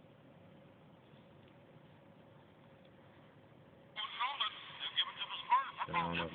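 Faint hiss, then about four seconds in an NBA live radio broadcast starts playing from the iPod touch's small speaker: a commentator talking, thin and tinny.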